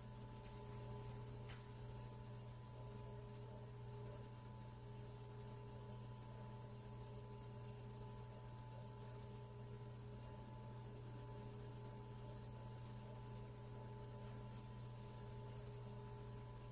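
Faint, steady electrical hum with a few constant tones and nothing else.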